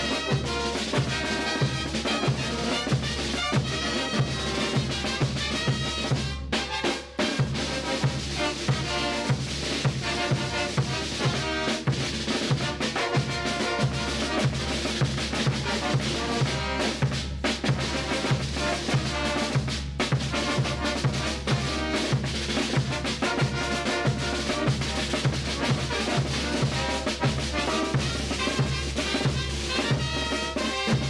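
Bolivian brass band playing live: a big bass drum and snare drums keep a steady beat under trumpets and silver baritone horns, with one brief drop about seven seconds in.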